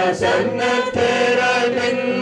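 Voices singing a slow hymn together, with long held notes.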